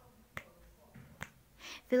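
Two sharp finger snaps, under a second apart, keeping the beat in a pause of unaccompanied singing; a breath is drawn and the singer's voice comes back in at the very end.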